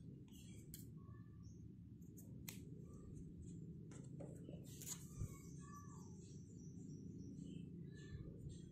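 Faint room tone with a few soft clicks and rustles from yarn being handled and pulled, and a small thump about five seconds in. Faint high chirps sound in the background.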